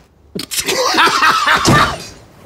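A person bursting into loud laughter about half a second in, breathy and shaking, lasting to the end.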